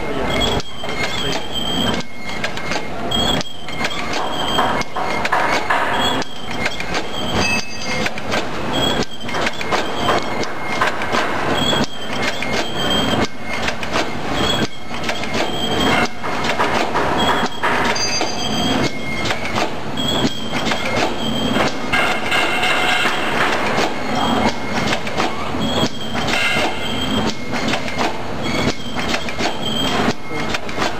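Automatic filter-paper tea bag packing machine running continuously: a steady, rapid clatter of clicks and knocks from its mechanism, with short high-pitched squeaks recurring every second or so.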